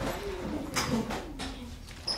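Schoolchildren moving about a classroom during a stretch break: scattered low voices with gliding, cooing pitch, and a brief rustle just under a second in.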